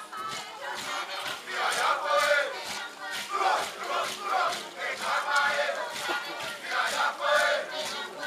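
A group of voices chanting and shouting together in short, loud phrases, a Kanak dance chant, growing loud about a second in.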